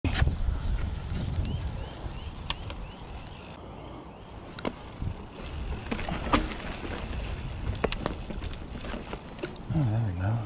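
Giant Trance 29er mountain bike ridden along a dirt woodland trail: a steady low rumble of tyres and wind on the camera microphone, with scattered sharp clicks and rattles from the bike. A short voice sound comes near the end.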